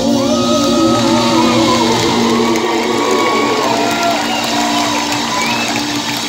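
Audience cheering and whooping, with many voices calling out over a steady chord held by the live band as the song closes.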